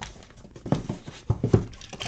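Hands tapping and shifting sealed cardboard boxes on a table: several soft knocks, mostly in the second half.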